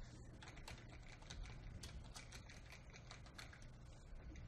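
Faint keystrokes on a computer keyboard: a quick, uneven run of key presses as a single word is typed.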